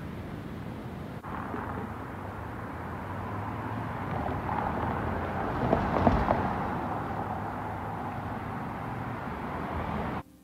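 Surf washing on a beach for about the first second, then a sudden cut to road noise as a pickup truck drives past close by, loudest about six seconds in and fading after.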